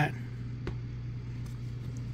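A steady low background hum, with a faint click of a baseball card being handled about two-thirds of a second in and a couple of softer ticks after it.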